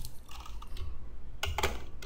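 Clicks of a computer mouse: a short cluster of two or three sharp clicks about one and a half seconds in, over a low steady room rumble.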